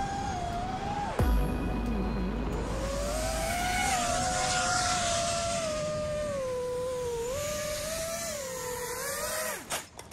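FPV racing quadcopter (iFlight Titan DC5 6S) motors and propellers whining, heard from its onboard camera over wind rush, the pitch rising and falling with throttle. About a second in the throttle is chopped and the whine dips sharply before climbing again, and it cuts off near the end.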